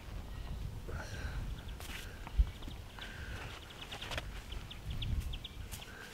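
Hands plucking tufts of annual meadow grass (Poa annua) out of sandy lawn soil and shifting on the ground: soft scuffing and rustling with scattered small clicks, and one sharp thump about two and a half seconds in.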